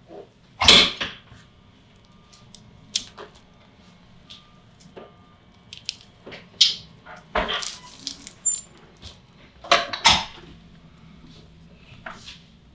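Irregular short rustles and sharp clicks of hands and bodies moving against a paper-covered chiropractic table during back palpation, the loudest about a second in, about halfway through and about ten seconds in.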